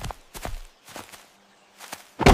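Cartoon footstep sound effects: several soft steps at an uneven pace in the first half, and one more near the end.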